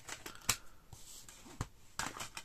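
Discs being slid over each other in a steelbook's clear plastic disc tray: soft rubbing with two light clicks, about half a second in and again near the end.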